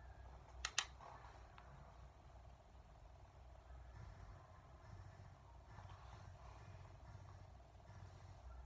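Near-silent room tone with two sharp clicks in quick succession a little under a second in.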